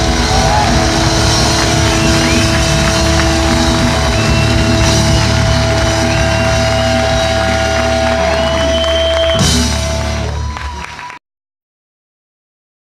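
Chilean punk rock band playing live, with a long held note over the full band. About nine and a half seconds in comes a final sharp hit; the sound then dies away and cuts off abruptly about a second and a half later.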